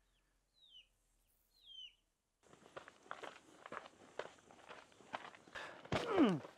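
Two short bird chirps, each falling in pitch, about a second apart. Then, from about halfway, faint footsteps and scuffs on a dirt path.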